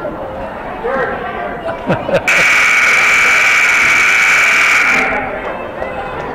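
Gym scoreboard buzzer sounding one steady, loud blast of about three seconds, cutting in abruptly a couple of seconds in: the horn for the clock running out at the end of the first half. Crowd chatter fills the gym around it.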